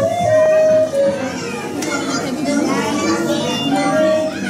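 Crowd chatter with children's voices, over background music with some held notes.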